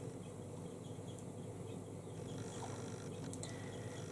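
Soft, faint brushing of a small makeup brush blending eyeshadow on the eyelid, over a steady low room hiss, with a couple of light ticks a little after three seconds in.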